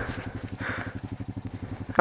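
ATV engine idling, a low, even rapid pulsing.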